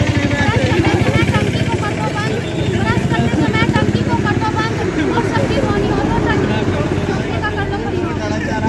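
A group of people talking over one another, with no single clear voice, over a steady low rumble like a nearby engine.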